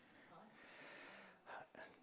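Near silence with a faint breathy exhale about half a second in, then two brief faint voice sounds near the end.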